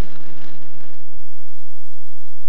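Rumbling, rolling noise of a shopping trolley's small wheels running over pavement; its low rumble thins out about a second and a half in.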